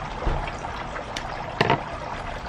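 Loose potting soil crumbling and trickling off the roots of a pothos into a plastic tub as the roots are pulled and shaken apart, with a few small ticks and one sharper tap about one and a half seconds in.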